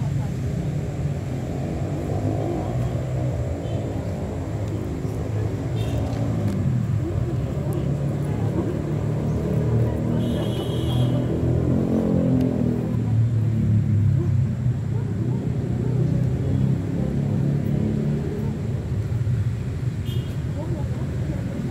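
Indistinct voices of several people over a steady low rumble, with the voices strongest about a third and about half of the way through.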